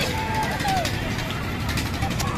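Voices of a fairground crowd over a steady low rumble, with a short high voice call in the first second.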